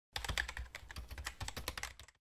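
Computer keyboard typing sound effect: a quick, irregular run of key clicks as text is typed out.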